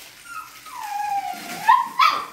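A young puppy, about five and a half weeks old, whining in one long cry that falls in pitch and then rises again. It ends in a short, louder yelp.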